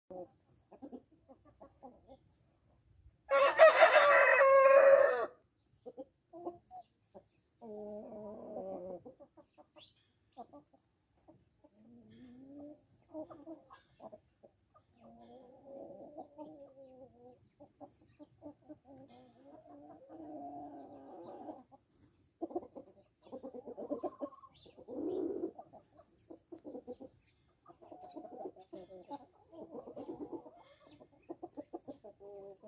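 Salmon Faverolles chickens: a rooster crows once, about three seconds in, for about two seconds, the loudest sound. Hens cluck softly on and off through the rest.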